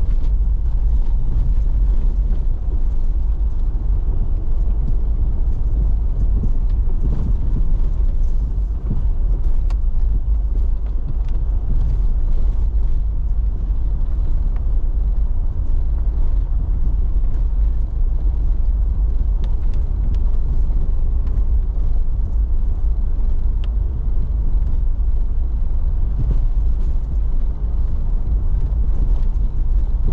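Jeep driving slowly on a dirt road, heard from inside the cab: a steady low rumble of engine and tyres, with a few scattered small clicks.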